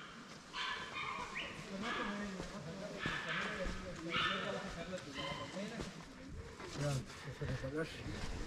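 Indistinct conversation of people nearby, with short higher-pitched calls recurring about once a second over it.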